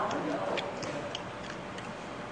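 Metal spoon clinking against a metal mixing bowl as rice is stirred and scooped: a run of light, irregular clicks, about three or four a second.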